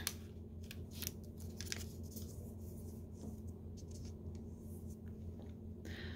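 A sheet of origami paper being folded and creased by hand on a wooden table: crisp paper crinkles and clicks, several in the first two seconds and a few scattered later, over a faint steady low hum.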